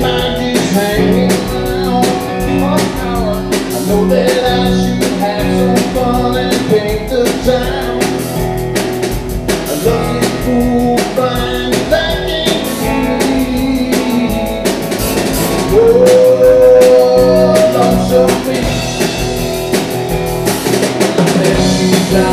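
Live band playing a blues-rock song on electric guitars, drum kit and keyboard, with a steady drum beat. About fifteen seconds in, a loud held lead note bends upward and sustains for a few seconds, the loudest moment.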